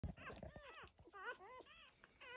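Newborn doodle puppies squeaking and whimpering faintly as they nurse: a string of short, high, rising-and-falling squeaks, several overlapping.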